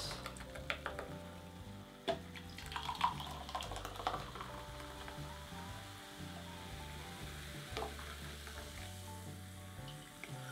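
Cola being poured from a can into glasses, fizzing as the carbonation comes out, with a few light knocks along the way. Quiet background music runs underneath.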